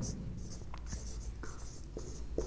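Marker writing on a whiteboard: faint strokes of the felt tip across the board, with a few short, light marks.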